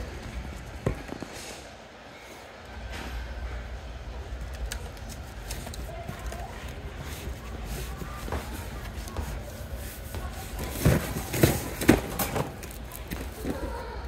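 Phone being handled against a metal wire shopping cart: a cluster of sharp knocks and clatters near the end, over a steady low store background hum.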